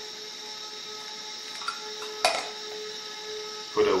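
Variable pipette dispensing a drop onto an agar plate: a single sharp click about two seconds in, over a steady hum with a faint high whine.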